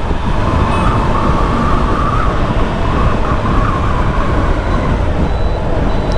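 Kawasaki ZX-10R inline-four engine and exhaust running under way as the bike slows, with wind rushing over the microphone. A wavering tone sits over it for the first few seconds.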